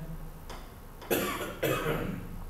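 A person coughing twice, two short coughs about half a second apart, starting about a second in.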